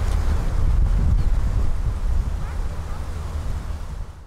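Wind noise on the microphone: a steady deep rumble with a hiss above it.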